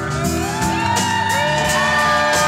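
Live band playing, acoustic guitar and bass guitar, with long held whoops and shouts from the crowd rising over the music from about a quarter-second in.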